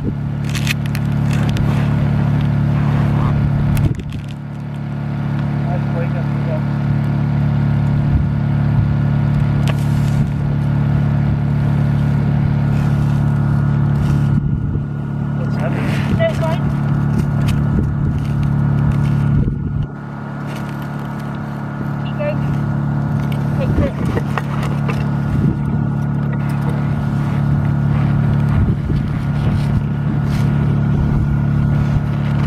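A steady low motor hum runs throughout, with faint voices. Over it come scattered scrapes and knocks as a snow core is slid out of a hand ice-corer barrel into a metal core tray.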